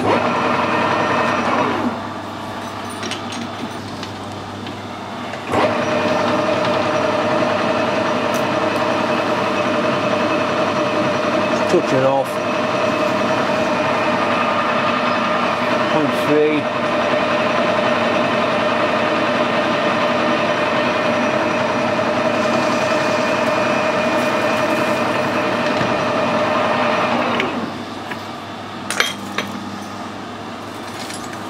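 Metal lathe turning an aluminium bush while a cutting tool faces about 3 mm off its end: a steady cutting sound with a ringing tone over the running spindle, from about five seconds in until it stops a few seconds before the end, followed by a couple of clicks.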